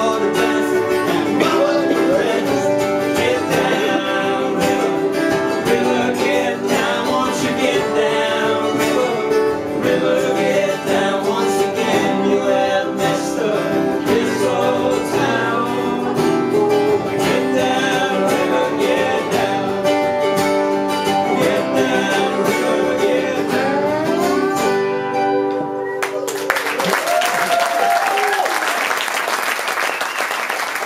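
Live acoustic band playing an instrumental passage on strummed acoustic guitars with a sliding lap steel guitar. The music ends about 26 seconds in and an audience applauds.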